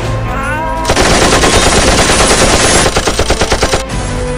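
Machine-gun fire sound effect: a dense, loud burst of automatic fire starting about a second in, breaking into separate rapid shots near the end.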